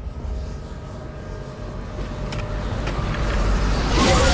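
Low rumbling drone, typical of horror-trailer tension sound design. It dips about a second in, then swells steadily louder, with a faint steady high tone over it and a few faint ticks near the three-second mark.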